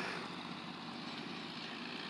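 Steady low rumble and hiss with no distinct events.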